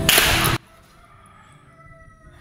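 A slap across the face: one loud, sharp crack lasting about half a second at the start, followed by quiet.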